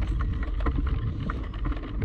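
Wind buffeting the microphone of a camera moving fast along a path: a heavy, steady low rumble with many small, irregular clicks and rattles from the ride.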